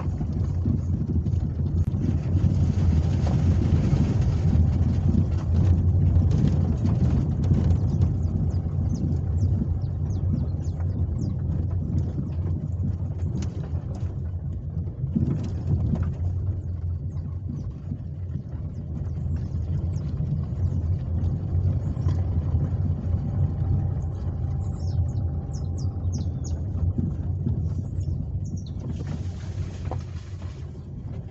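Low, steady rumble of a car driving slowly, heard from inside the cabin: engine and tyre noise on an uneven dirt road. Birds chirp faintly over it, mostly near the end.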